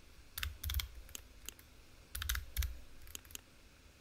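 Computer keyboard keystrokes and mouse clicks: about ten short sharp clicks, bunched in two groups, one starting just under half a second in and one around two seconds in.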